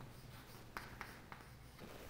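Chalk writing on a chalkboard: a few faint, short strokes and taps as letters are written.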